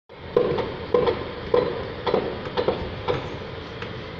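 Dump truck tipping a load of sand, its engine running under the hiss of sand sliding off the raised bed. Sharp knocks about twice a second sound over it for the first three seconds, then fade.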